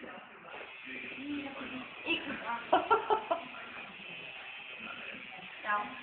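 Short, indistinct bursts of a person's voice about two to three seconds in, over low room noise.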